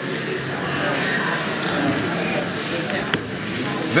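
A hand ink roller being rolled back and forth over an inked lithographic stone, inking up the image: a steady rustling hiss. A single sharp click comes about three seconds in.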